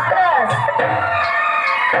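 Loud music played through loudspeakers: a sung voice over a steady low drum beat.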